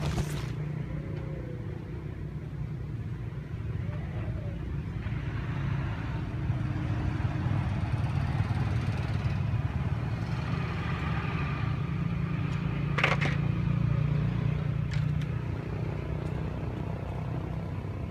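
Steady low rumble of motor traffic, with a sharp click about thirteen seconds in.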